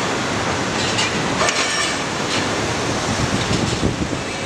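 Large tracked hydraulic excavator (Komatsu PC350 class) with its diesel engine running steadily, and a few sharp knocks from the machinery.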